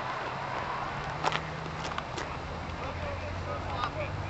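Amtrak Pacific Surfliner train pulling away, a steady low diesel drone from its F59PHI locomotive with a few sharp clicks.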